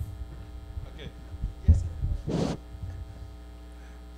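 Steady electrical mains hum through a PA system, with a loud thump and a short rustle from a handheld microphone being handled about halfway through as it is passed from one person to another.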